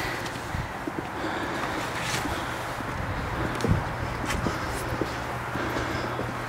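Footsteps on thin snow and frozen ground, with camera-handling rustle and a few scattered knocks, over a steady low hum.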